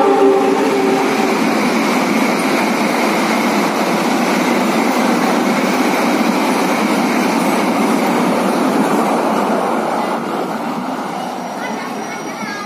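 A passing train: the end of a KAI CC 206 diesel-electric locomotive's horn dies away in the first second, then the loud, steady rumble and rattle of the train running past, fading over the last couple of seconds.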